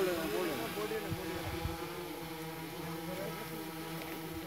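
Quadcopter camera drone hovering: its rotors give a steady hum of several held tones.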